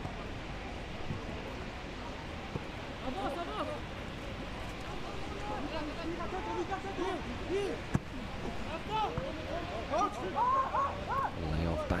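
Pitch-side sound of a football match: players shouting and calling to one another in short cries, which come more often in the second half, over a steady background hiss.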